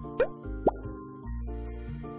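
Light background music with steady chords and bass, with two quick rising 'bloop' pop sound effects about a quarter second and three quarters of a second in.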